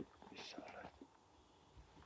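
A man whispering a short question, "Missä olet?" ("Where are you?"), in the first second, then near quiet.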